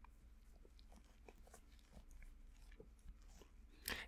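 Near silence: room tone with a few faint scattered ticks.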